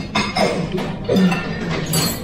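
Cutlery clinking on china, with a sharp clink just after the start and another near the end, over a steady restaurant background.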